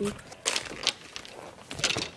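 Golf bag and clubs being handled close to the microphone: rustling and scraping with a few sharp knocks and clicks.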